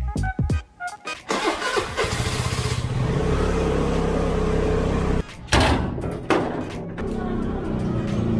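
Motor scooter engine running at a steady idle, with two sharp knocks about two-thirds of the way through.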